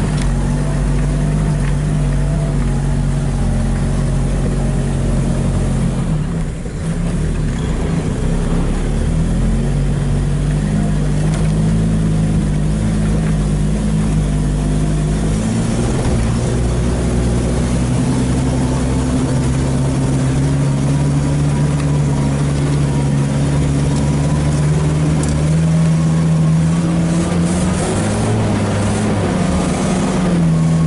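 A vehicle's engine running as it drives, heard from inside the cabin. Its note shifts as the throttle changes, with a brief dip about six seconds in and a rise near the end.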